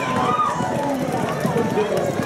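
A man's voice calling the race over a loudspeaker, over the drumming of galloping racehorses' hooves on turf.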